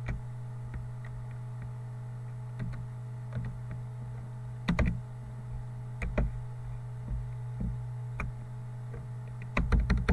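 Computer keyboard and mouse clicks in scattered bursts, the loudest around the middle and a quick cluster near the end, over a steady low electrical hum.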